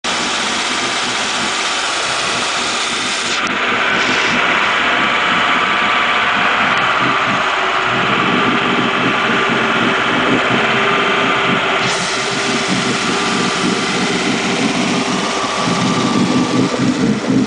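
A 1992 Ski Nautique's rebuilt PCM inboard V8 runs steadily at idle on one of its first runs after the rebuild. It has new GT40P heads, cam and intake, and breathes through stainless-steel exhaust pipes. Its low throb grows stronger about halfway through.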